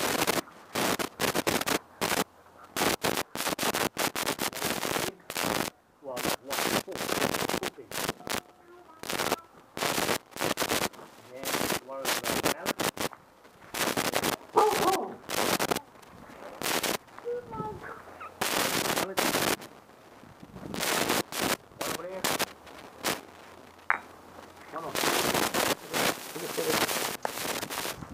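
Pop-up tent's nylon fabric and spring frame crackling and rustling as it is handled and bent for folding, in quick irregular clusters of sharp crackles with brief gaps between them.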